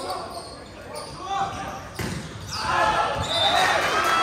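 Volleyball struck several times in a rally, sharp slaps about a second apart echoing around a gym. Shouting from players and spectators swells over the last second or so.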